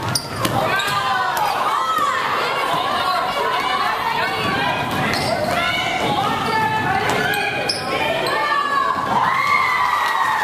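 Basketball game sounds in a gymnasium: sneakers squeaking on the hardwood court and the ball bouncing, with shouting voices, echoing in the large hall.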